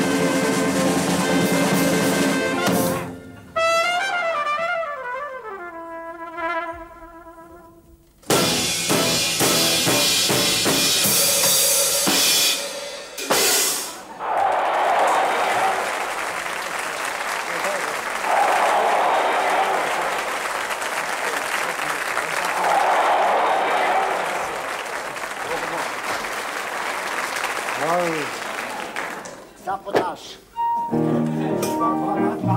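A studio big band with drum kit and brass plays, breaks off into a slowly falling pitched tone, then plays loudly again. From about halfway on there is a long stretch of studio-audience laughter and applause, swelling every few seconds.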